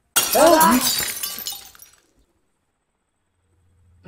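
A glass window pane shattering from a bullet strike: a sudden crash just after the start that dies away over about two seconds.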